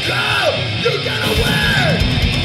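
Live heavy metal band playing loudly, with distorted electric guitar and drum kit under a hoarse, yelled lead vocal that slides up and down in pitch.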